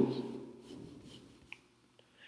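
A voice trails off into quiet room tone, with one short, sharp click on the computer about a second and a half in.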